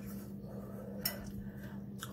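A spoon scraping in a bowl of soft mashed corned beef hash, with one sharp clink against the bowl about halfway through, over a steady low hum.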